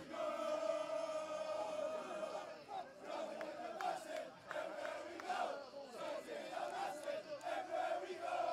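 A group of footballers chanting and shouting together in a victory celebration huddle, many male voices holding one long chant at first, then breaking into looser, scattered shouting a few seconds in.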